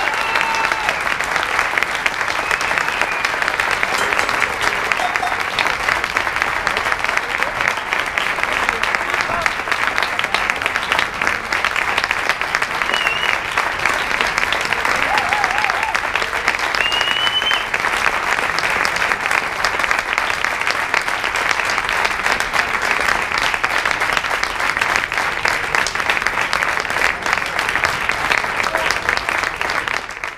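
A concert audience applauding steadily, with cheering voices and a few short whistles.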